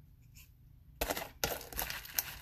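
A jar of body scrub being handled and put down: a sharp knock about a second in, then another knock about half a second later with scraping and rustling between.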